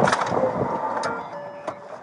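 Inside a police patrol car: a loud thump as an officer settles into the driver's seat, then rustling and knocking of his gear and two sharp clicks. Short electronic beeps at several pitches sound about a second in.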